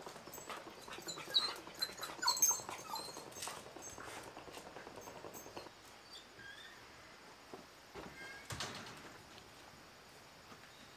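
A dog whining in short high-pitched whimpers, several close together in the first three seconds and a couple more later. A brief rattle about eight and a half seconds in as the screen door opens.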